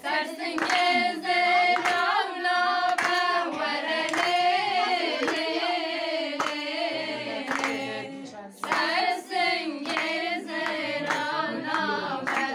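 A group of women singing a Kurdish folk song together, with hand-clapping on the beat. The voices break off briefly a little past halfway and then come back in.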